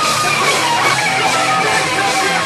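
Live hardcore band playing loud, distorted electric guitar, with pitched guitar lines bending up and down over a dense wall of sound.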